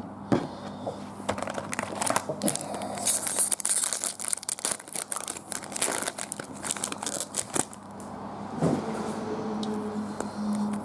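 Foil trading-card pack crinkling in the hands and being torn open, with a longer, brighter rip about three seconds in.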